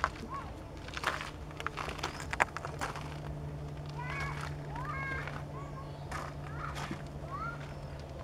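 Riverbank evening ambience: short chirping bird calls, a few sharp clicks in the first seconds, and a steady low hum underneath that grows stronger partway through.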